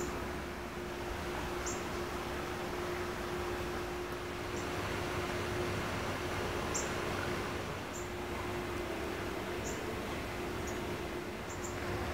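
Outdoor ambience: a steady hiss and low hum, with about eight short, high chirps from small birds scattered through it.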